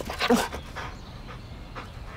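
A dog gives one short vocal sound about a quarter of a second in, then stays quiet.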